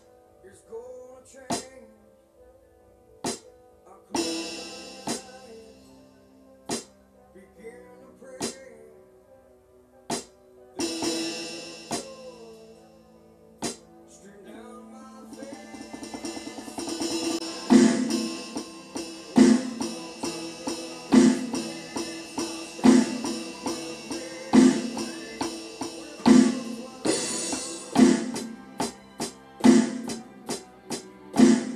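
A recorded rock song with singing, played along on a Yamaha DD-40 digital drum pad. It starts with sparse single hits and two cymbal swells, builds up about sixteen seconds in, then settles into strong, even backbeat hits about every second and a half.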